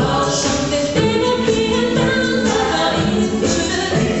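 An a cappella vocal group singing in multi-part harmony, with a steady repeating beat over the sustained chords.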